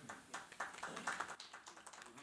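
Scattered faint clicks and taps, as of small objects being handled on a table, with faint voices murmuring in the background.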